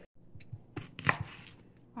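Chef's knife chopping garlic cloves on a wooden cutting board: a series of separate, unevenly spaced knocks of the blade on the board.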